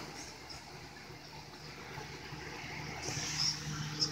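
Quiet room noise with a faint steady hum, and a soft rustle of the camera being handled against a blanket that grows louder in the last second.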